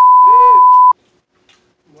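Censor bleep: a single steady, high-pitched beep lasting about a second that stops abruptly, laid over a spoken swear word.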